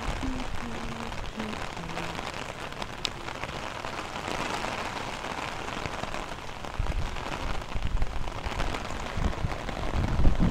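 Heavy rain falling steadily, pattering on an open umbrella overhead and on wet pavement. From about seven seconds in, low rumbling bursts come in under the rain.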